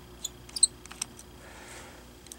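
Light metallic ticks of a precision screwdriver working a tiny screw out of a laptop screen's metal mounting bracket: a few sharp clicks in the first second, the loudest just past half a second.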